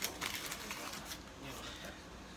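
Soft rustles and a few brief noisy scrapes from loose pipe tobacco being handled close to the microphone, with a faint low murmur.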